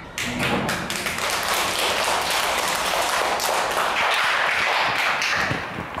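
A class of young children clapping their hands, a round of applause that eases off just before the end.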